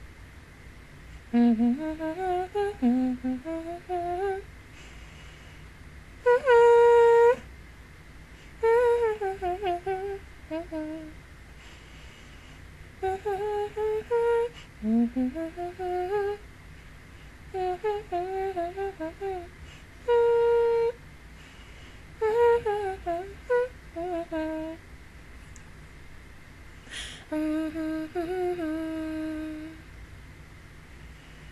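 A woman humming a song's melody in short phrases, with brief pauses between them.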